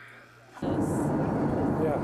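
A quiet lull, then about half a second in an abrupt cut to the steady, loud cabin noise of an airliner, with a brief spoken "yeah" near the end.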